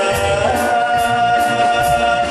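A man singing through a microphone with a mixed Chinese and Western orchestra behind him; his note steps up about half a second in and is held long and steady.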